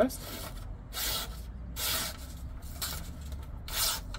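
A D2 steel knife blade slicing through a sheet of paper in a sharpness test: about five short, hissing slicing strokes. The blade cuts decently sharp.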